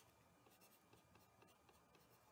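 Near silence, with the faint, irregular taps and scratches of a stylus writing on a pen tablet. A faint steady high-pitched whine runs under it.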